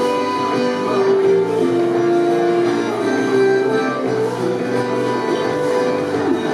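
Live folk band playing a schottische: button accordion, flute, guitar and bass guitar, with held melody notes over a steady dance accompaniment.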